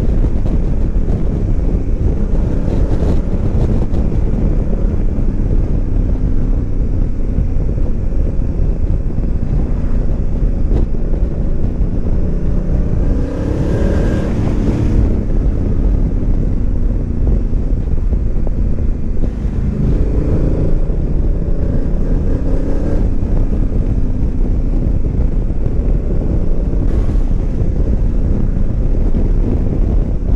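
Honda Africa Twin DCT's parallel-twin engine running at road speed, with heavy wind noise on the microphone. The engine note dips and climbs again twice, a little under halfway through and again a few seconds later.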